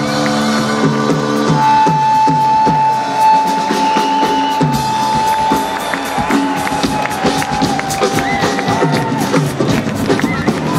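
A live rock band ends a song. A held chord with drums breaks off about a second and a half in, then come scattered drum hits and a long high sustained note while the crowd cheers.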